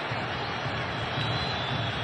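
Steady stadium crowd noise: the broad, even sound of a large crowd.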